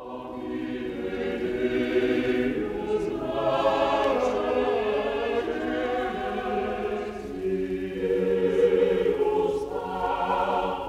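Choral music: a choir singing slow, held chords that fade in at the start.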